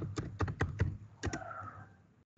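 Computer keyboard keys being typed in a quick run of separate clicks as digits are entered, ending with a final key press.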